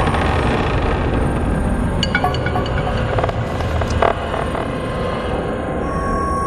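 Intro of a psytrance track: a dense, rumbling noise texture with a pulsing low end, joined from about two seconds in by short electronic blips and clicks.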